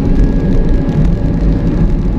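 A vehicle driving along a road at speed: a steady, loud low rumble of engine and road noise, with a faint steady whine above it.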